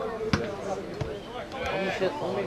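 A football goalkeeper's kick clearing the ball: a single sharp thud of boot striking the ball, with a fainter knock about a second in.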